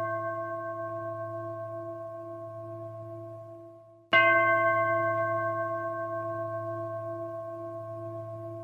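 A struck metal bell in the dance's music, ringing with a slow decay, struck again about four seconds in, over a low steady drone.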